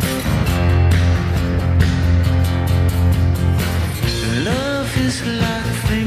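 Rock band playing live, with drums and a steady heavy bass. A note bends up and back down about four and a half seconds in.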